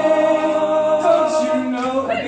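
Men's a cappella group singing a sustained, wordless chord in close harmony, the voices moving to a new chord about a second in.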